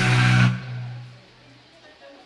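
Irish punk-folk band ending a song: the full band cuts off about half a second in and the last guitar chord rings out and fades over the next second, leaving only faint background noise.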